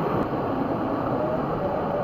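Steady rushing of a shallow stream running over rock slabs and boulders.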